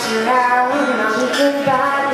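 A woman singing a slow melody in long held notes while playing an acoustic guitar.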